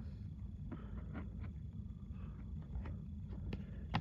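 Faint, scattered clicks and taps of hard plastic card holders being handled and moved, over a low steady hum.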